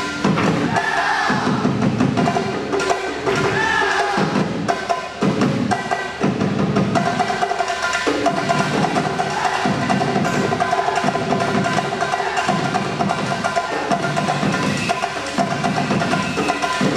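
A live band playing dance music, with strong percussion keeping a steady beat under sustained melody.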